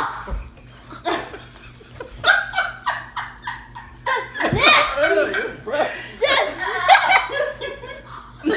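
A boy and others in the room laughing: a run of quick, even laugh bursts about two seconds in, then louder, fuller laughter from about four seconds on.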